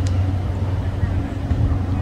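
Steady low outdoor rumble, with one brief high squeak right at the start.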